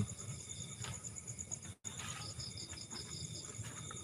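Crickets chirping steadily in a fast, pulsing high trill. All sound cuts out for a split second a little under two seconds in.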